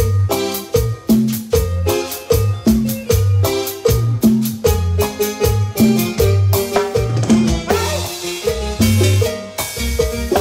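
Live cumbia band playing an instrumental passage: electric bass, drums and keyboard over a steady dance beat.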